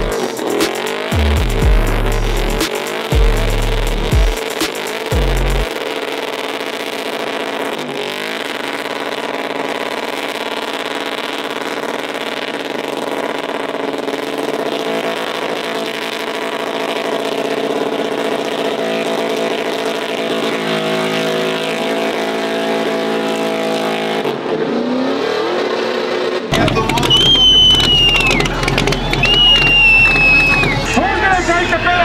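Pickup truck doing a burnout, its engine held at steady high revs with tyre squeals near the end, mixed with music whose heavy bass pulses in the first few seconds and comes back hard a few seconds before the end.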